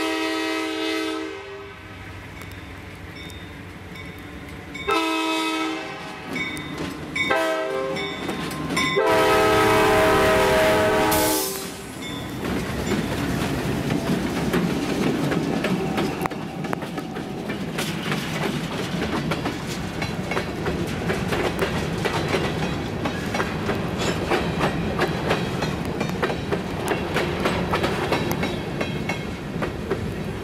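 Diesel freight train passing close by: the lead locomotive's air horn sounds two long blasts, a short one and a final long one, the standard grade-crossing signal. The locomotives then rumble past, and a string of covered hopper cars follows with a steady clickety-clack of wheels over rail joints.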